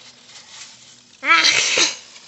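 A young girl's short, breathy shriek ("Ah!") a little over a second in, after a quiet lull: a startled cry at a grasshopper jumping at her.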